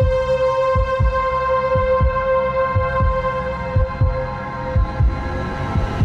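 Tense background score: a held droning tone over a low, heartbeat-like double thump about once a second. The drone fades near the end as a hissing swell rises.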